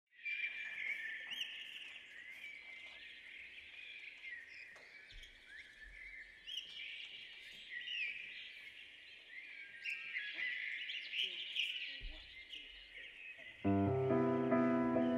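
Many birds chirping and singing together, a dense outdoor dawn-chorus-like ambience of short rising and falling calls. Just before the end, the band comes in with a loud held chord.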